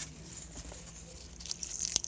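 Grapevine leaves and a grape bunch rustling as a hand handles them. It is faint at first, with crackly rustles building up in the last half second.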